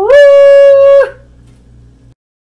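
A man's long excited yell, rising into one steady high note held for about a second, then cutting off and leaving a faint hum.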